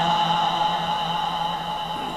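A sustained chanted vocal note from a naat recitation, held steady and slowly fading away.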